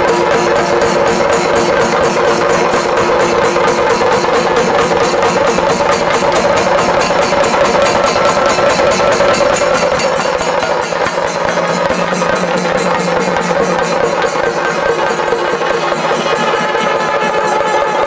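Kerala chenda melam: a row of chenda drums beaten together in a fast, even, unbroken rhythm, with kombu horns holding long notes over the drumming.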